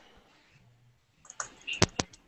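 A short pause with little sound, then a faint low hum and faint voice sounds, and one sharp click near the end.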